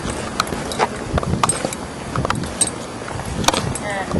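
Handling noise from a camcorder held close against clothing: irregular clicks, knocks and rustling as it is carried and moved.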